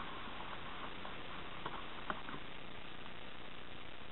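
Low steady hiss with two faint light clicks, about one and a half and two seconds in, as a paper napkin is pressed and tucked down inside a small clear plastic tub.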